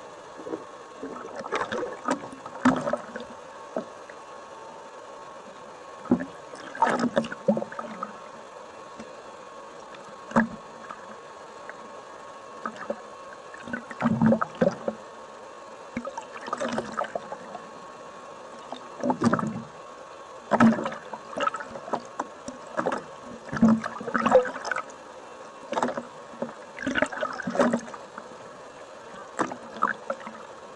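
Water sloshing and bubbling around a camera at and just below the sea surface as a snorkeler swims, in irregular bursts every second or two over a steady hiss with a faint steady tone.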